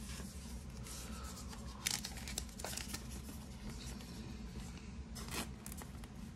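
Baseball cards and plastic card holders being handled: a few short, sharp rustles and scrapes of card and plastic, the loudest about two seconds in and another a little after five seconds, over a low steady hum.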